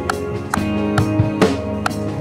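Acoustic drum kit played with sticks in a steady groove, kick and snare hits a little over twice a second, mixed with a multitrack worship-band backing track of held chords.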